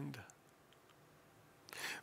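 The tail of a man's spoken word, then a quiet pause of about a second and a half with a few faint clicks, ending in an intake of breath just before he speaks again.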